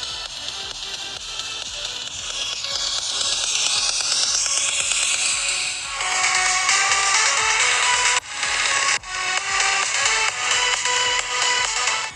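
A pop song playing through a Huawei P20 smartphone's built-in loudspeaker, with little bass. It is being played for a speaker-quality comparison against the Xiaomi Mi A1.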